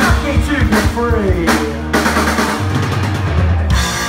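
Live punk rock band playing: drum kit with bass drum and snare hits under electric guitars and bass guitar, with several notes sliding in pitch in the first half.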